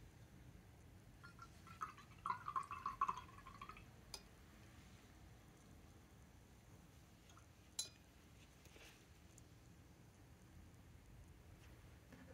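Mostly near silence, with faint small handling sounds about two to four seconds in and two light single clicks, near four and eight seconds.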